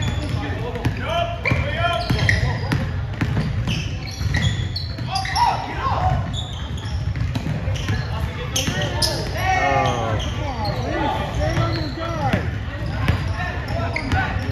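A basketball being dribbled on a hardwood gym floor, with repeated sharp bounces, while players and spectators talk and call out in the echoing hall.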